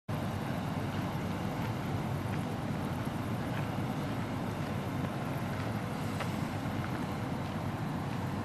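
Steady low rumbling of wind buffeting the microphone outdoors, with a few faint ticks over it.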